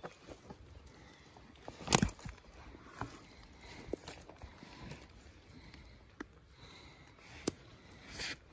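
Hands pulling dry grass and leaf litter away from old glass telegraph insulators, giving scattered rustles and a few short clicks and knocks, the loudest about two seconds in.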